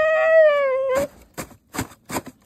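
Siberian husky, stuck under a deck in the snow, giving one long, steady howl that sags slightly in pitch and breaks off about a second in. A few short, sharp sounds follow.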